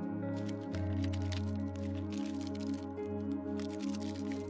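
Calm instrumental background music. From about half a second in, irregular crinkling and handling noises come through, as small hardware is taken from its plastic bag.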